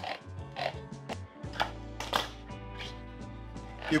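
Hand-held crank can opener clicking in short, irregular ticks as its wheel cuts around the lids of bean cans, over steady background music.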